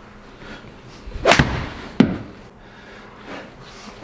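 A golf club swung hard through the air gives a short whoosh about a second in, followed by a single sharp knock about two seconds in.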